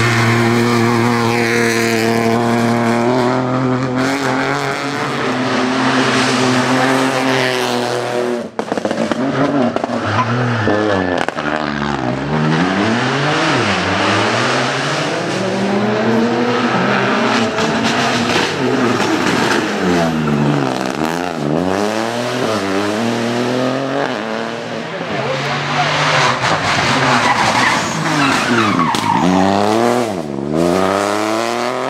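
Peugeot 208 Rally4's turbocharged three-cylinder engine, driven hard: steady high revs at first, then revving up and down again and again through quick gear changes and lifts as the rally car goes by at stage speed.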